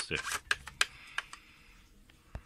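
A few light, irregular clicks and taps from hands handling parts at the back of a telescope, over the first second and a half.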